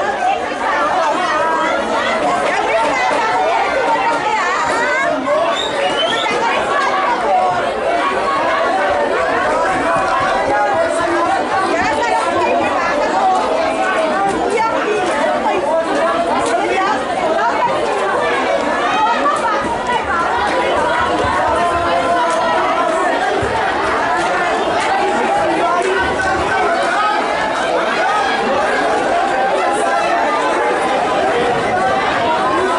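Many people talking at once: a steady babble of spectators' chatter, with no single voice standing out.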